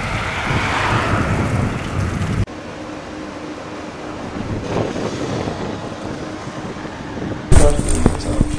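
Outdoor street noise with wind on the microphone. It cuts abruptly to a quieter hiss with a faint steady hum about two and a half seconds in. Near the end, a Carabinieri patrol car comes in loudly as it drives past close by.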